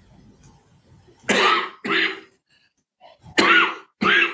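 A person coughing: two coughs a little over a second in, then another pair near the end.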